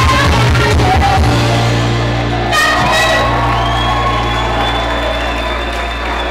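Live pop band and female singer ending a song. The beat stops about a second in and the band holds a final chord under the singing, with a long, high held note through the second half.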